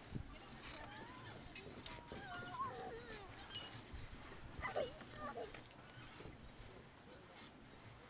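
Brief, faint voices of people walking past on the suspension footbridge, with a clearer one just under five seconds in, over light knocks of footsteps on the wooden deck planks.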